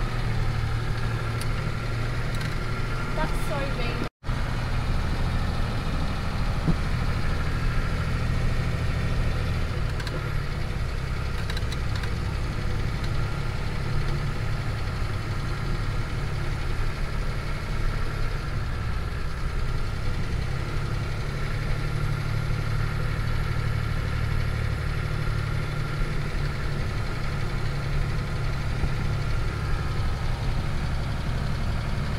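Engine of a 45 series Toyota Land Cruiser running at low speed as it is driven, heard from inside the cab: a steady low drone with small shifts in pitch. The sound cuts out for an instant about four seconds in.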